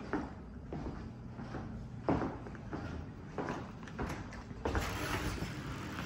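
Footsteps on a hard floor, with knocks spaced about every half second to a second, and handling noise from a hand-held camera as someone walks.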